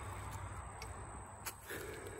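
Quiet outdoor background: a steady low rumble with a few faint clicks, one about a second and a half in.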